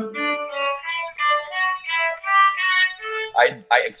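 Cello played with the bow, a run of short, separate sustained notes changing about three times a second, as a demonstration of a circular push-and-pull bowing movement.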